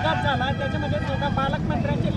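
Voices of people talking in the background over a steady low outdoor rumble, typical of road traffic and wind on the microphone.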